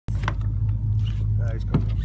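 Fishing party boat's engine running with a steady low hum. A brief voice and a sharp click come near the end.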